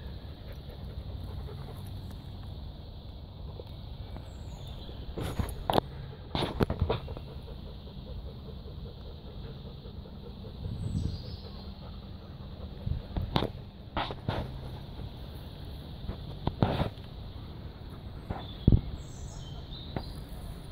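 Outdoor ambience around a pack of resting dogs: a steady low rumble with a handful of short sharp knocks scattered through it and a few faint high chirps.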